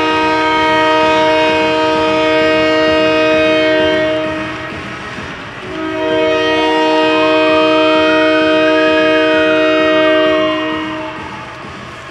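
Arena goal horn sounding for a home-team goal: a loud, multi-tone horn like a train horn, in two long blasts of about five seconds each, with a short break between them. Partway through the second blast a whistle-like tone rises and then falls away.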